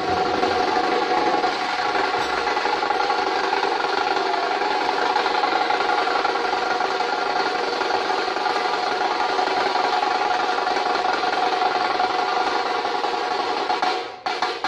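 Outro music: a dense, steady wash of held tones with no clear beat, starting abruptly after a brief silence.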